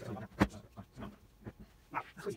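A sharp click about half a second in as the LG 38UC99 monitor is turned and tilted on its stand, among softer handling knocks.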